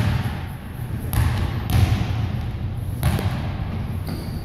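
Basketball bouncing on a hardwood gym floor, a series of low thuds.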